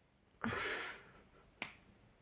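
A woman's short breathy exhale about half a second in, fading away, followed by a single sharp click.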